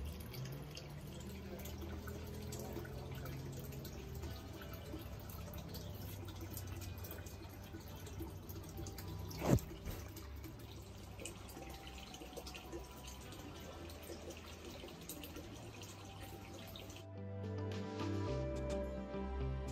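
Soft background music over a faint, steady trickle of water. About halfway through comes a single sharp knock as the dog's muzzle bumps the phone. The music grows louder near the end.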